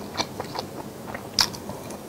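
A person chewing a mouthful of food with the mouth closed: a run of soft, wet clicks, with one sharper click about one and a half seconds in.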